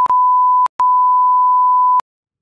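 A censor bleep: a single steady beep tone, with a brief break about two-thirds of a second in, stopping abruptly at the end. It covers the rider's swearing at another driver.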